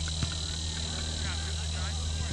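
Steady high-pitched insect drone over a low steady hum, with faint distant voices.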